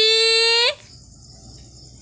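A person's voice calling a child's name in a long, drawn-out sing-song call held on one pitch, cutting off under a second in.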